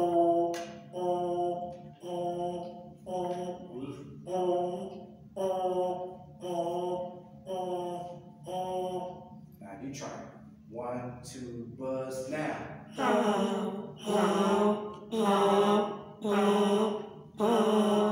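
Brass mouthpieces being buzzed in a breathing drill: a run of short buzzed notes about one a second, with a few sliding buzzes around the middle, and louder, fuller notes from about 13 seconds in.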